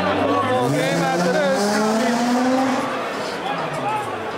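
A motor vehicle's engine revving up, its pitch climbing steadily for about three seconds before it fades, over the murmur of a crowd.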